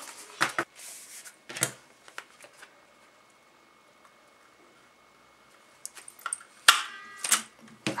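Crop-A-Dile hand punch clicking shut through a calendar page to make a binder-ring hole, a single sharp snap about two-thirds of the way in, with light handling of the paper before it.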